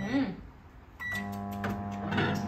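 Microwave oven being started: a short keypad beep, another beep about a second in, then the steady electric hum of it running.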